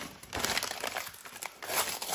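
Newspaper wrapping crinkling in the hands in irregular rustles, and tearing where it sticks, as it is pulled off the sticky back of a flip phone.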